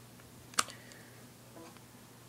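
A single sharp click about halfway in, a USB flash drive being pushed into a laptop's USB port, then a faint short tone near the end over quiet room tone.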